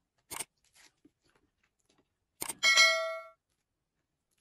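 A short click, then about two and a half seconds in another click followed by a bright bell ding that rings out in under a second: a notification-bell sound effect.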